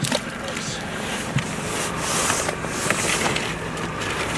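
Water swishing in a plastic bucket as a mesh dip net is worked through it to scoop live shiner minnows, with two stronger swishes about two seconds in and near the end, over a low steady hum.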